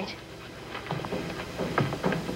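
Dog panting in short, irregular breaths, beginning about a second in.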